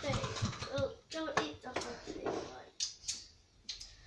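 Quiet children's talk in the first part, then scattered short clicks and knocks of things being handled.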